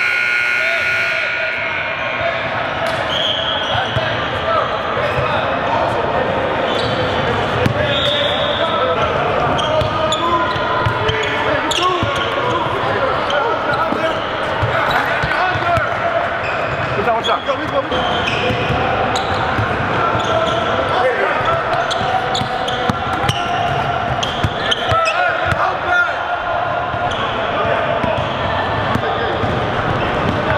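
A basketball being dribbled and bounced on a hardwood gym floor during a full-court scrimmage, with players' indistinct shouts and chatter echoing around a large hall.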